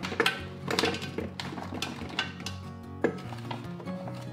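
Dates tipped from a plastic bag into a steel mixer bowl: several separate knocks and clinks as they land, over background music.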